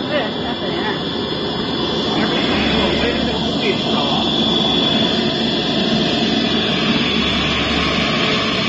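CNC router running with a steady high spindle whine over loud, even machine noise as its drilling head bores holes in a particleboard panel.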